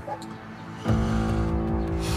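Dramatic soundtrack music: after a quiet first second, a low, steady, tense drone with a deep rumble comes in suddenly and holds.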